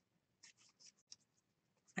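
Near silence with a few faint rustles and one small tap as paper and cardstock scraps are handled and shifted.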